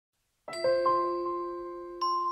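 Intro jingle of bell-like chime notes: after half a second of silence, a few notes are struck in quick succession and ring on, slowly fading.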